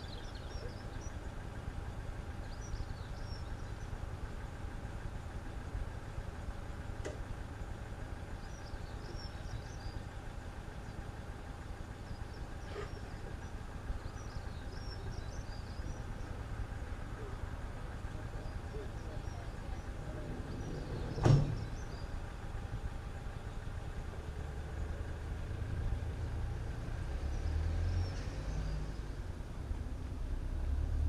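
Minibus engine idling steadily, with one sharp bang about two-thirds of the way through, its door slamming shut; in the last few seconds the engine grows louder as the minibus pulls away.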